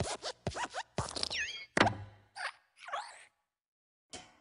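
Sound effects of the Pixar logo: the animated desk lamp's springy joints squeaking in quick falling squeaks, with knocks as it hops on the letter I. The loudest knock comes a little under two seconds in as the letter is squashed flat, and the sounds stop a little after three seconds.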